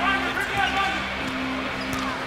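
Basketball arena crowd murmur under steady held musical tones from the arena sound system; the tones break off briefly near the end.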